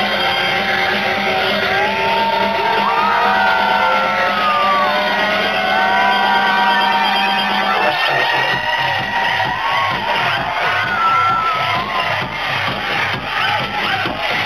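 Electronic dance music played loud over a club sound system: a breakdown with a held chord and gliding crowd whoops, then the kick drum drops back in about eight seconds in, at about two beats a second.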